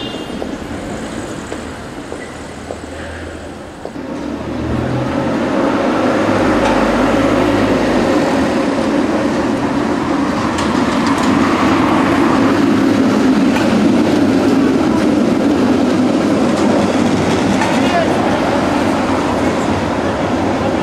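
A Konstal 105N-type tram runs along street-embedded track past the camera. Its steady rumble of wheels on rails swells about five seconds in and stays loud, with a low motor hum in the first seconds of the pass.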